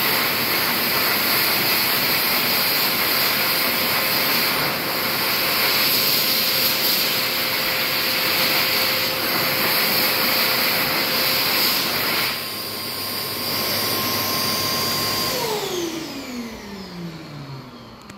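World Dryer Airforce high-speed hand dryer running with a steady rush of air. About twelve seconds in it drops a little as the hands are withdrawn, and a few seconds later the motor cuts out and winds down with a falling whine.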